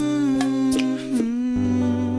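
A song: a voice holds one long note over bass and guitar accompaniment, the note dropping slightly a little past a second in and then wavering.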